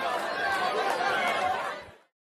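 Crowd of many voices chattering at once, fading out near the end.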